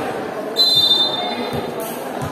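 A volleyball referee's whistle blown once in a single long, shrill blast, starting about half a second in and lasting a little over a second, over the chatter of the crowd.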